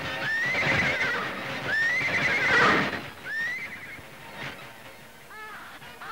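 A horse whinnying three times, each call rising sharply and then quavering down, the second the loudest; a shorter, softer call follows near the end.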